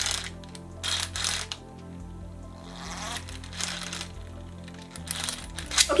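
Sky Dancers doll launcher's plastic mechanism worked by hand, making several short whirring, clattering bursts as the winged doll on top is spun.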